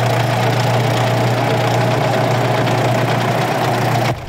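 Diesel engine of a driverless farm tractor idling steadily: a loud, even, low drone.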